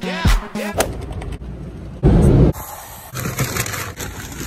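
Pop music with singing, giving way about a second in to a rough, noisy rush, with a loud low thump about two seconds in.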